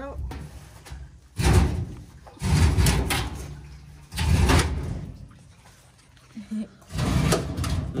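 A fuel tank being pulled out from under a car, scraping and dragging across the ground in four separate tugs.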